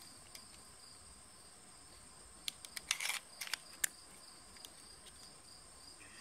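Steady high chirring of crickets throughout. About two and a half to four seconds in comes a quick cluster of small clicks and one short scrape, as the parts of a Zastava M57 pistol are handled during reassembly.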